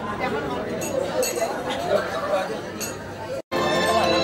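Dinner-party chatter from many guests, with several sharp clinks of glassware and tableware. About three and a half seconds in, the sound drops out for a moment and music with steady held notes begins.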